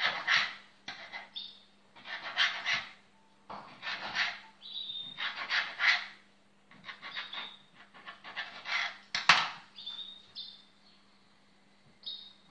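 A knife drawn repeatedly through risen dough, each cut scraping across the metal worktop: about seven strokes, roughly a second and a half apart, with short high squeaks between some of them.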